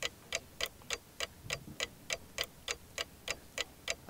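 Quiz-show countdown timer: a steady clock ticking at about three ticks a second, marking the team's time to answer the question.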